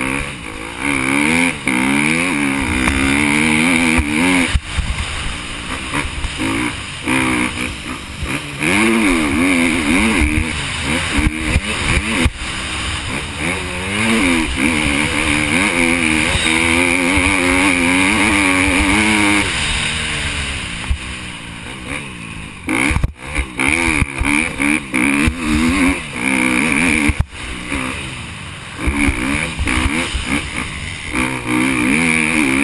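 Motocross bike engine revving hard and falling away again and again as the rider accelerates and shuts off through the corners, heard close up from a helmet camera.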